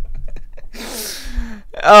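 A man laughing: a long, breathy gasp of laughter a little under a second in, then a loud voiced "oh" with falling pitch starting near the end.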